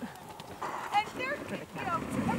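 Hoofbeats of a ridden horse on soft arena footing, with people's voices talking over them.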